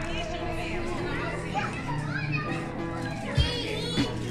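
Children's voices chattering and calling out in a crowd, over background music with long held notes. A short low thump comes near the end.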